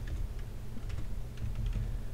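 Computer keyboard being typed on: a scattering of light, irregular key clicks.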